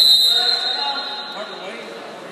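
Referee's whistle: one sharp, high blast that fades away within about a second, stopping the wrestling action.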